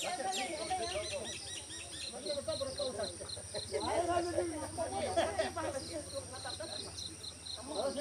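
Outdoor insects: one chirps in a steady rhythm of about four pulses a second over a constant high insect drone. There are a few quick falling bird calls near the start, and indistinct voices of people nearby, loudest around four to six seconds in.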